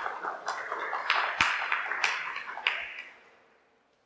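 A small audience applauding, the clapping dying away about three seconds in.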